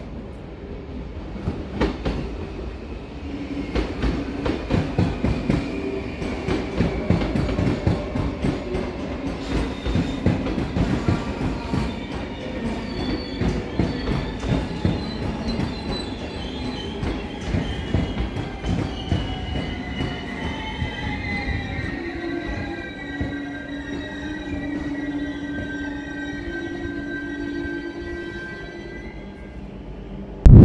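An NS double-deck electric train passing through a curve, its wheels clattering in a quick rhythm over the rail joints and points. Its wheels squeal with high, gliding tones that take over in the second half, while the clatter fades away.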